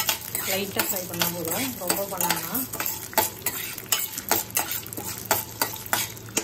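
A spoon stirring split lentils as they roast in a stainless steel pan: a run of quick, irregular scrapes and clicks of metal on the pan, a few every second.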